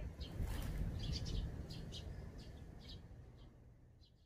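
Tree sparrows chirping in a string of short calls over a low steady rumble, the sound fading out near the end.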